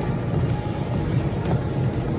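Treadmill running with someone walking on the belt: a steady low rumble of the motor and belt.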